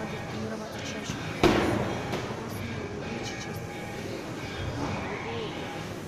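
A medicine ball hits hard once, a single loud thud about a second and a half in that rings briefly through the large gym hall, over a murmur of voices.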